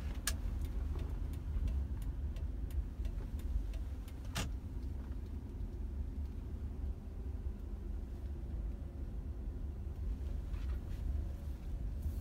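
Cabin sound of an automatic car driving slowly: a steady low road-and-engine rumble, with faint regular ticking in the first half and one sharper click about four seconds in.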